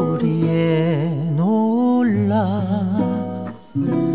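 A song: a singer holds long notes with wide, wavering vibrato over steady instrumental accompaniment, with a brief drop in loudness near the end.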